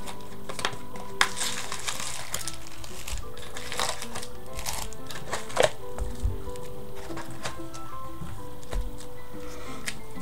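Background music with steady held notes, under scattered rustles and clicks as foil-wrapped card packs are handled and stacked on a desk.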